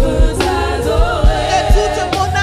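Gospel worship music: a group of women singing together in harmony, over a steady low beat from the band.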